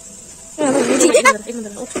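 A person speaking Bengali from about half a second in, over a faint steady high hiss.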